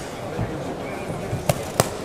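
Two sharp smacks about a third of a second apart near the end, boxing gloves landing punches, over a steady arena murmur of voices.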